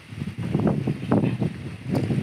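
Wind buffeting the microphone, with a man's low, indistinct voice in short bursts.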